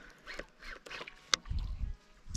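Baitcasting reel and rod being worked: a handful of short, irregular clicks and ticks, the sharpest about a second and a half in, with a low handling rumble near the end.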